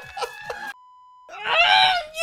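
A woman crying out in shock, a loud drawn-out scream with a wavering pitch in the last half second. Just before it, about a second in, her voice cuts out and a short steady censor bleep plays over the silence.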